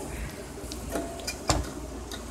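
Handling noise from a small acoustic guitar being passed over and taken hold of: a few light bumps and knocks, the clearest about one and a half seconds in.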